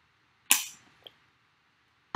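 A single sharp click that dies away quickly, then a much fainter tick about half a second later.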